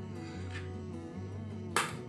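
Background music with a steady bass line and a sharp snap near the end.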